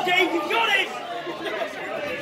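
Wrestling audience shouting and chattering, with a loud, high-pitched shout or two in the first second, then quieter mixed voices.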